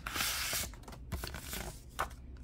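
Paper envelope being handled and opened, its contents slid out. A short rush of paper rustling comes in the first half second, then lighter rustles and small scrapes.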